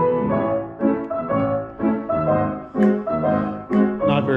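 Three player grand pianos, a Steinway Model L, a Samick and a Pramberger, playing together as a trio, with a run of struck chords and notes.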